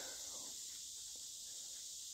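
Faint, steady high-pitched insect chorus in summer woods, with no other sound standing out.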